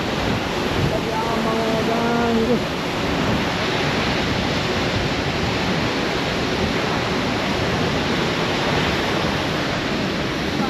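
Steady rushing of a tall waterfall, about 100 m high. A person's voice is heard briefly about a second in.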